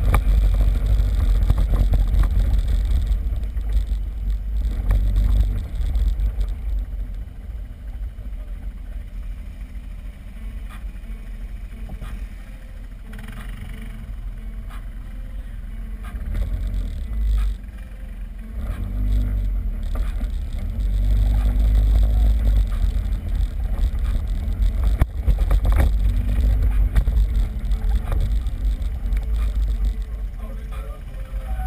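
ATV engine running under way, mostly a low rumble. It is louder for the first few seconds and again over the last ten, and eases off through the middle.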